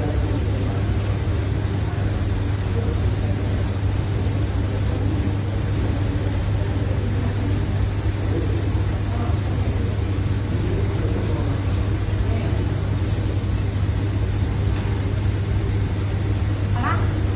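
Powder coating spray booth running: a steady, loud machine noise with a strong low hum and an even airy rush, unchanging throughout.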